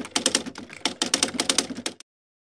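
Typing sound effect: a rapid run of key clicks that stops suddenly.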